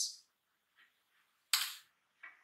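A single sudden, sharp, hissy snap about one and a half seconds in, dying away within a third of a second, with a few faint small handling sounds around it.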